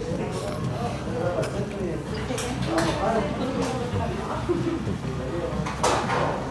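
Indistinct chatter of several people talking in a restaurant, with a few short clicks or clinks; the loudest one comes near the end.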